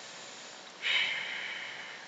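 A man's breath, drawn in audibly close to the microphone, starting a little under a second in and fading over about a second. A faint steady hiss lies under it.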